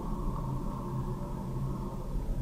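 Steady low hum with faint noise: the background room tone of the recording, with no speech.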